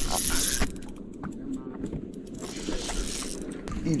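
A brief rustle of something brushing the microphone, then a fishing reel being cranked: fine, rapid mechanical clicking over a low steady rumble as a bass is reeled to the boat.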